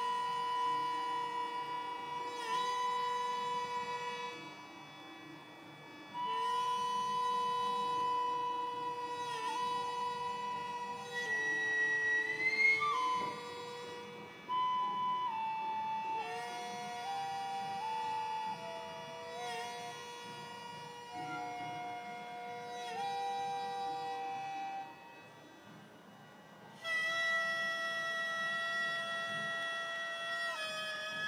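Gagaku court wind ensemble playing: ryūteki bamboo flute and hichiriki double-reed pipe carry a slow, long-held melody over the sustained chords of the shō mouth organ, in long phrases with brief breaks between them.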